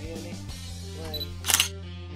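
A DSLR shutter fires once at a slow 1/15 s shutter speed, a single short click about one and a half seconds in. Quiet background music plays underneath.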